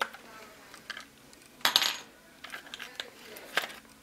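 Light clicks and clatter of a Traxxas Stampede's plastic gear cover being worked off the chassis by hand, a few separate clicks with the loudest cluster just before the middle.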